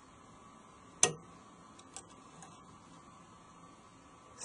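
Lishi HU101 2-in-1 pick clicking in a car door lock as the wafers are picked one position at a time: one sharp click about a second in, then a few faint ticks.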